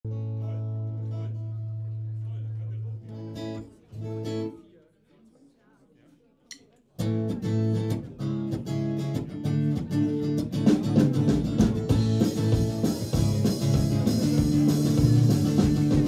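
A live rock band opening a song: a held chord and two short chords, then a brief near-silent pause. About seven seconds in, strummed acoustic guitar, electric guitar and drums start together, and the drums grow fuller near the end.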